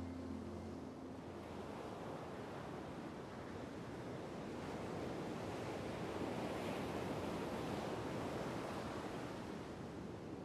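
Sea waves breaking and washing onto a pebble beach: a steady rush of surf that swells a little in the middle. The last notes of music fade out in the first second.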